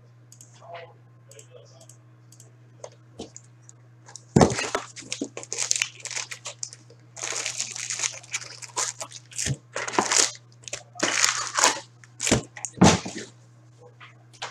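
A box of 2017-18 Upper Deck Series One hockey card packs being opened and emptied: foil pack wrappers crinkling and rustling against the cardboard as they are pulled out and set down, with a few sharp knocks. The handling starts about four seconds in, over a steady low hum.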